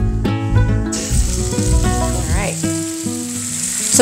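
Prosciutto-wrapped pork loin searing in hot olive oil in a stainless steel pan: a loud sizzle starts suddenly about a second in as the meat goes in, over background music.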